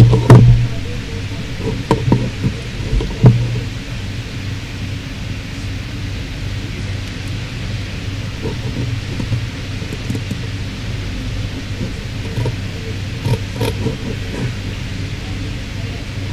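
Steady low electrical hum with hiss, typical of a hall's microphone and PA system, with a few loud knocks in the first few seconds.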